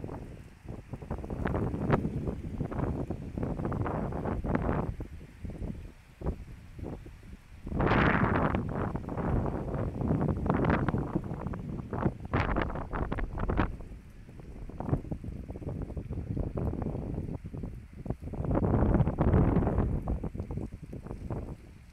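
Wind buffeting a phone microphone in gusts, a rough rumble that swells and fades every few seconds, strongest about eight seconds in and again near the end.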